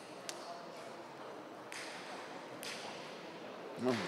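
A table tennis ball struck once by a bat, a sharp click about a quarter second in, in a large hall. About a second later comes a short rush of noise, with another click near its end, and a man's voice begins with "oh" at the very end.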